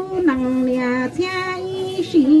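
A woman singing kwv txhiaj, Hmong sung poetry, solo into a microphone: long held notes that drop to a lower pitch soon after the start and step back up about halfway through.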